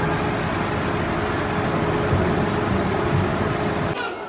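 Passenger train standing at a station platform: a steady hum of the train with one constant whining tone over it.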